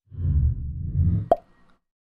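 Logo-intro sound effect: a deep, low whoosh lasting about a second that ends in a sharp pop, then fades out quickly.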